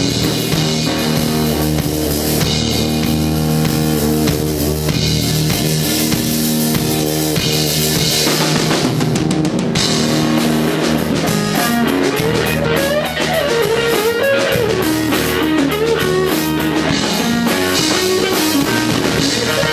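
Live rock music: an electric guitar with a Flying V body played over a drum kit.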